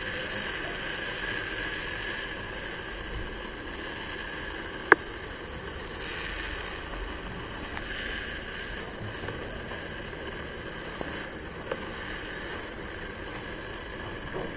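Steady background hiss and hum with no clear source, broken by one sharp click about five seconds in and a few faint ticks later.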